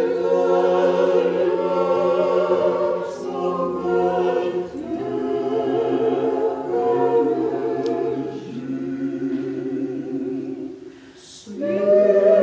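Russian Orthodox church choir singing a Christmas hymn a cappella in held chords with vibrato. The phrases break about five and about eight seconds in, and the singing dies away shortly before the end before a new, louder phrase begins.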